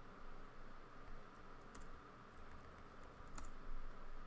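Computer keyboard keystrokes: scattered, faint key clicks, with one louder click a little before the end.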